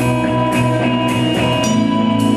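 Live band music: an electric bass and drums, with cymbal strikes about every half second over sustained chords that change about one and a half seconds in.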